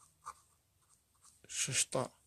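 Pen writing on paper: faint, short scratching strokes. A person's voice comes in briefly near the end.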